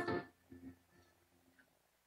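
A strummed guitar chord dies away in the first moment, leaving a pause with only a few faint traces of sound.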